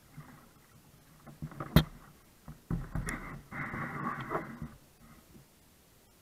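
Kayak paddling noises: a single sharp knock about two seconds in, like a paddle striking the hull, then about two seconds of rough rumbling and sloshing as the paddle works the water alongside the boat.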